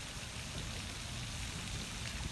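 Faint, steady outdoor hiss of wind and rippling pond water.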